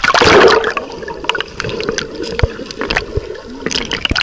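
Sea water splashing over the camera as it goes under the surface, then muffled underwater gurgling with scattered clicks.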